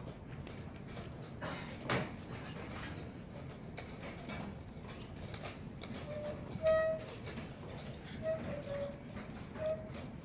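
Quiet playing-hall ambience with a single knock about two seconds in and a few short, high squeaks in the second half, the loudest near seven seconds.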